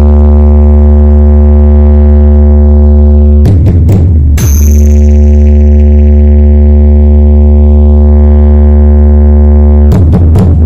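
A 4×15-inch DJ speaker stack playing a deep, sustained bass drone at full power, loud enough to push the recording to its limit. About three and a half seconds in, the drone breaks for a moment into clicks and crackle, then carries on steadily.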